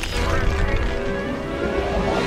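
Film soundtrack: sustained music notes held over a deep, continuous rumble.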